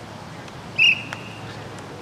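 Referee's whistle blown once for the kickoff: a short, loud, steady high blast about a second in, trailing off into a fainter tone.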